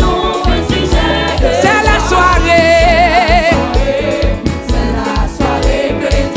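Live gospel worship music: a woman singing lead over a band with drums and bass. Near the middle she holds a long note with a wide vibrato.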